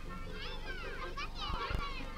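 Children's voices at play: high, quick calls and chatter.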